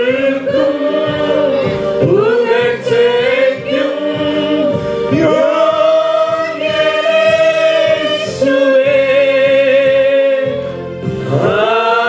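Christian worship song in Malayalam, sung into microphones by a man and two women together, in long held notes. The singing eases briefly near the end, then a new phrase starts.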